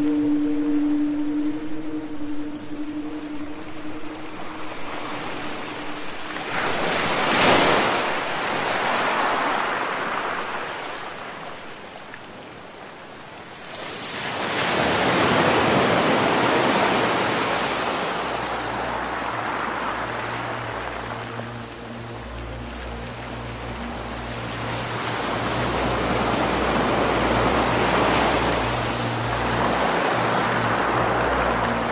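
Ocean waves washing in and drawing back in slow swells, three of them, layered with ambient music: a held chord that fades out in the first few seconds and low sustained drone notes that come in about two-thirds of the way through.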